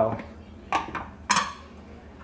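Dishes and cutlery clattering twice, short sharp knocks with a brief ring, the second the louder, as food is served out.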